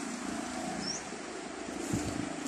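Steady outdoor background noise with one short, high, rising chirp about a second in and a brief soft knock near the end.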